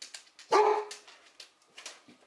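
A dog barking once, loudly, about half a second in.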